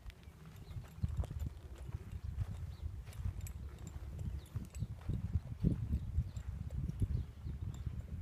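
Gray horse's hooves stepping on hay-strewn dirt: dull, irregular thuds as the horse shifts and turns in place.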